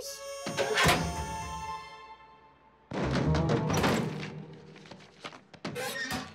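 Cartoon score with sound effects: a sharp, ringing hit about half a second in that fades over about two seconds, then a burst of thuds about three seconds in, and short knocks near the end.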